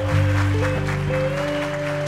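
A live band holding steady sustained notes on bass, keyboard and guitars, with audience applause over it.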